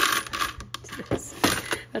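Small spare furniture hardware pieces, wooden dowels and plastic fittings, clattering against each other and the walls of a clear plastic bin as a hand rummages through them, in a run of sharp clicks.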